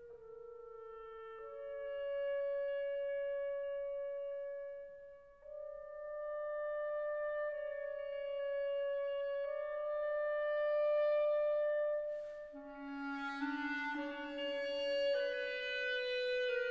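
Slow orchestral music: a solo wind instrument plays a quiet melody of long, held notes. About three-quarters of the way through, a lower second voice and more instruments join in and the texture fills out.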